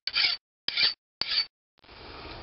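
Hand file scraped in three short strokes across the edge of a cast iron valve head held in a lathe chuck, knocking off a small curled-over burr.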